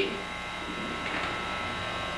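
Steady electrical buzz and hum, with several faint steady high whining tones.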